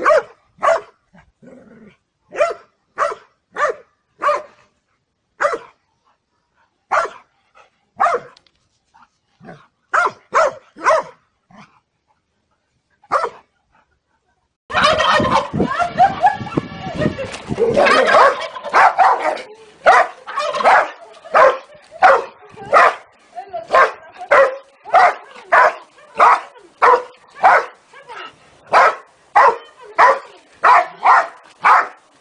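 A dog barking at a chicken in short, irregular groups of barks with pauses between. About halfway through the sound changes to a dense few seconds of squawking and barking, then a dog barking steadily about twice a second.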